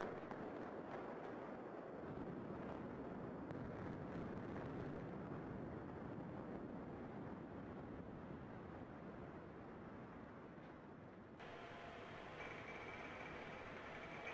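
Explosive demolition of a row of multi-storey buildings: the sound starts suddenly as the charges fire, and the collapse follows as a long rumble that slowly fades. About eleven seconds in it changes abruptly to a steadier hiss with faint steady tones.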